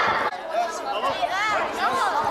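A group of children chattering, several voices talking and calling over one another.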